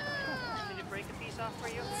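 A child's high-pitched squeal that falls in pitch over about a second, amid the chatter of a group of children.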